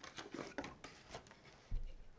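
Faint handling sounds: a run of soft clicks and rustles, with a short low bump about three-quarters of the way through.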